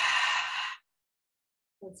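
A woman breathing out audibly through the mouth: one long, breathy exhale that fades out under a second in.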